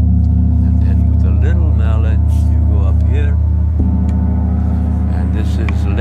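A 32-inch Meinl Sonic Energy Eight Corners of Heaven mirror gong, struck with a felt mallet, ringing with a steady low sound that fills the whole stretch. A second, lighter stroke comes a little before four seconds in, and higher overtones waver above the low tone.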